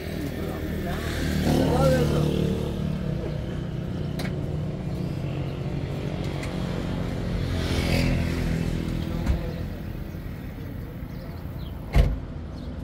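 Motor vehicles passing on a road, their engine hum swelling about two seconds in and again around eight seconds.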